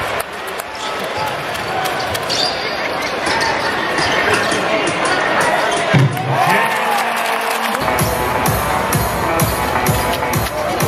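Live NBA game sound in a large arena: a basketball being dribbled on the hardwood court, sneakers squeaking, and crowd chatter. Near the end, arena music with a steady beat of about two a second comes in.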